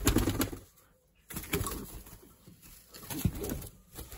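Domestic pigeons cooing in a loft, with a few sharp knocks and rustles from the birds and their wooden boxes.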